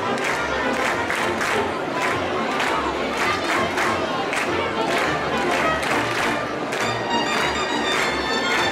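Festival dance music with a quick, steady beat of sharp clacks over the noise of a large crowd of children. Near the end, reedy wind instruments come in with held notes.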